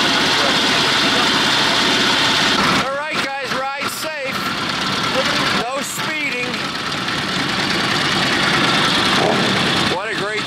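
Motorcycle engines idling and pulling away, with a vintage Harley-Davidson ridden past close by. Voices come in briefly about three seconds in and again about six seconds in.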